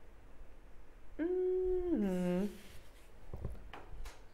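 A person humming one long note of about a second, which then slides down to a lower pitch. A few faint taps of handling follow.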